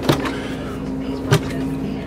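A wooden RV cabinet door being opened, with two sharp clicks, one near the start and one about a second and a half in, over a steady low hum.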